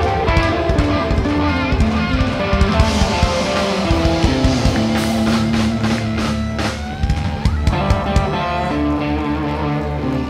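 A live rock band playing: electric guitars and bass over a drum kit, with steady drum hits.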